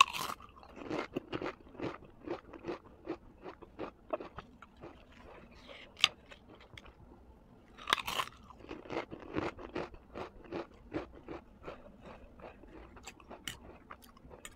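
Close-miked chewing of a mouthful of instant noodles and sausage, about two to three chews a second. There is a louder crunching bite near the start and another about eight seconds in.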